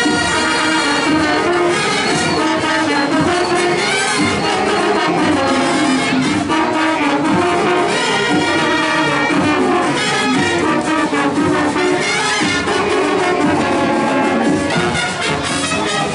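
Marching band playing: brass (trumpets and trombones) carrying a melody over steady percussion, loud and continuous.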